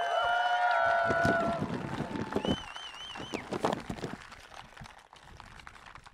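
Outdoor rally crowd cheering and clapping, several voices holding long whoops at once, the cheering fading away over about four seconds. A brief warbling high whistle rings out about two and a half seconds in.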